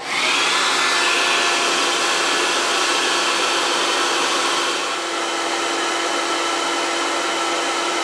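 Hair dryer with a tape-wrapped nozzle blowing steadily over a guitar nut to soften the glue so the nut can be removed: an even rushing of air with a faint steady hum, dipping slightly about five seconds in.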